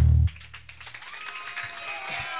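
A grindcore band's last chord cut off sharply, with the bass tone dying away over about a second. Scattered clapping and shouts from a small club crowd follow.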